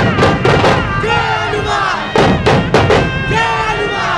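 Dhol-tasha troupe: large barrel dhol drums struck hard in short clusters of beats, near the start and again about two seconds in, with a group of men shouting loud chants between the strikes.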